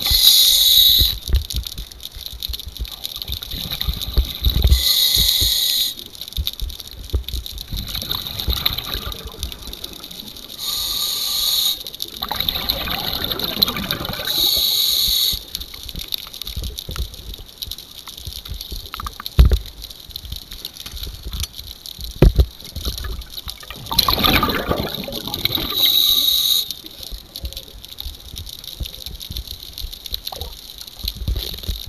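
Scuba diver breathing underwater through a regulator: a hissing inhale every few seconds and gurgling bursts of exhaled bubbles, with a couple of sharp knocks against the piling.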